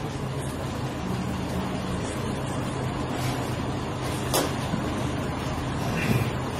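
Steady low hum of room background noise, with a single sharp click about four seconds in.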